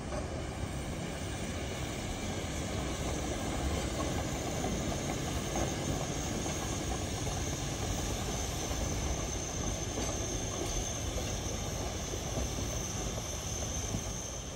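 Lima-built Shay geared steam locomotive moving along the track: a steady rumble of running gear and escaping steam, with a faint high whine joining about four seconds in.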